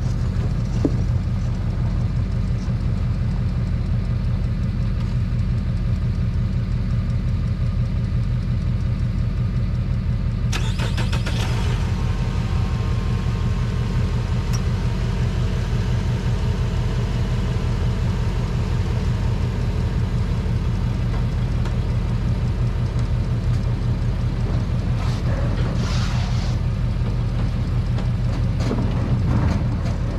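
Vehicle engine idling with a steady low rumble. A wider hiss joins it about ten seconds in.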